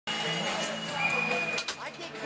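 Ice hockey rink sound from the bench: voices under a steady high tone that steps down in pitch about halfway, and a couple of sharp clacks near the end.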